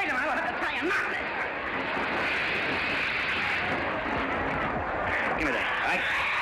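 Fire hose spraying a jet of water, a steady hiss, with a hubbub of voices over it.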